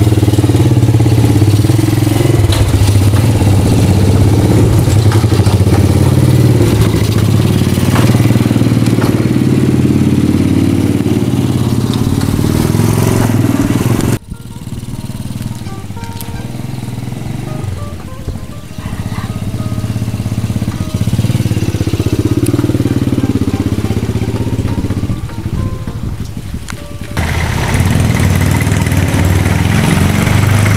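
Small motorcycle engine of a becak motor (motorcycle with sidecar cart) running steadily as it rides, loud for the first half, then fainter after a sudden change about halfway. Near the end the sound changes to a Daihatsu Taft's engine running.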